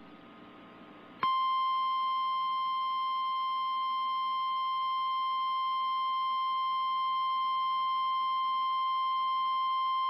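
Emergency Alert System attention tone: a loud, steady electronic tone that starts sharply about a second in, after faint hiss, and holds unbroken for about nine seconds. It signals that the spoken alert message, here the statewide tornado drill test, is about to follow.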